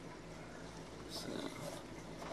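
Faint steady low hum with a soft water wash, typical of a small reef aquarium's pump and powerhead running.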